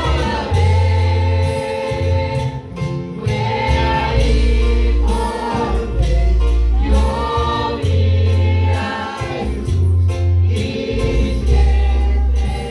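A worship song sung by voices with a live church band of drums and keyboard, amplified through the hall's speakers, with long deep bass notes under the singing.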